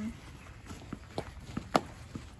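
Footsteps walking across a grass lawn: a run of short soft thuds, several a second, with one sharper knock about three-quarters of the way through.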